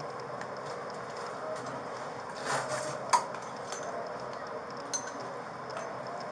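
Metal handcuffs clicking and clinking as they are handled on a person's wrists. There are a few scattered short clicks, the sharpest about three seconds in.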